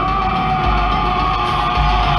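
Loud heavy rock soundtrack music with a man's long, held scream over it.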